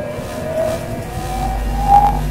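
An electronic tuning tone on a prop device, rising slowly in pitch over crackling static as the tuning dial is turned. A low steady hum joins about halfway through.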